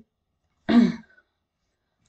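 A woman briefly clears her throat once, about two-thirds of a second in.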